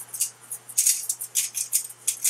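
Garlic salt shaker being shaken over a salmon fillet, the grains rattling in quick, even strokes about five a second.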